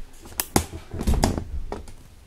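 Handling noise from a camera being tilted down and repositioned by hand: several sharp knocks and clicks, loudest around the middle.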